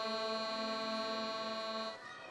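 An accordion holding one long sustained chord, which cuts off at the end.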